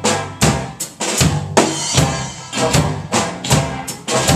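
Klezmer band playing live: a drum kit keeps a steady beat under the upright bass, reeds and flutes.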